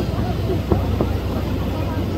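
Fireworks bursting: a steady low rumble of booms, with two sharper bangs close together about midway.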